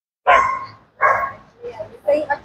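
A dog barking: two loud barks about three-quarters of a second apart, then a fainter third near the end.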